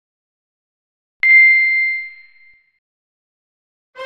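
A single bell-like ding: one clear, high tone struck about a second in that rings and fades away over roughly a second, heard against complete silence.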